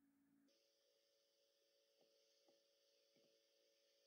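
Near silence: a faint steady electrical hum, with three faint computer-mouse clicks about two to three seconds in.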